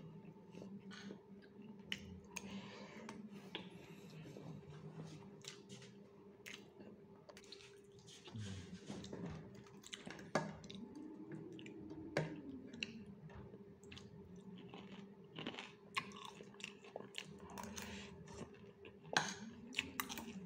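A person eating fried chicken wings and rice with a spoon: faint chewing, with scattered light clicks.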